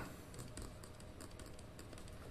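Faint, scattered clicks and taps of a stylus writing by hand on a tablet screen.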